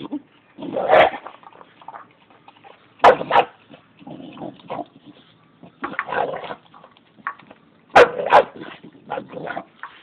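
A dog at its food bowl giving short, gruff barks every second or two, several of them in quick pairs.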